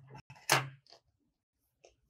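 Scissors set down on a tabletop: a short knock and clatter about half a second in, after a softer click and paper handling just before it.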